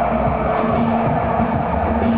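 Live electronic folk music: laptop-programmed beats and sounds with an electric guitar, played loud through a stage sound system.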